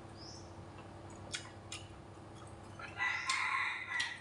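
A loud, steady pitched call about a second long near the end, after a couple of light clicks of a spoon and chopsticks against the dishes.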